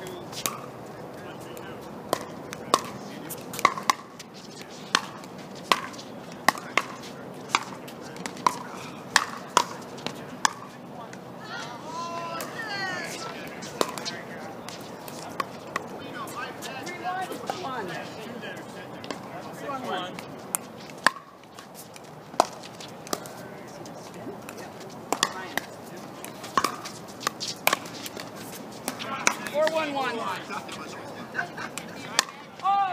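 Pickleball paddles striking a hard plastic ball in rallies: a string of sharp pops, roughly one a second, through the first third and again near the end, with a pause in between.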